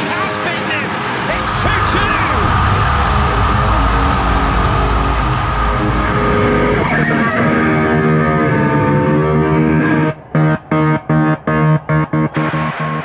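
A stadium crowd roaring at a goal, with electric-guitar rock music over it. From about seven seconds in the music takes over. Near the end it cuts in and out in a quick stutter, about five times in two seconds.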